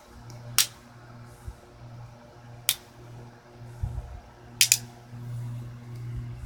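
Steel hex nuts snapping onto a large neodymium block magnet: sharp metallic clicks, one about half a second in, one near three seconds and a quick pair near five seconds. A steady low hum runs underneath.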